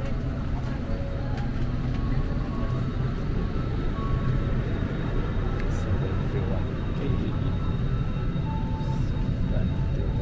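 Steady low rumble of a parked airliner's cabin air system, with faint indistinct voices.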